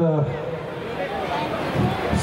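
Only speech: a man's voice ends just after the start, then fainter talk continues until another voice starts near the end.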